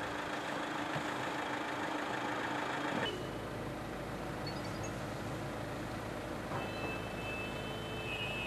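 Steady car and engine hum beside a parked car for about three seconds, then a cut to the steady road and engine noise inside the car's cabin while driving, with a faint high steady tone joining near the end.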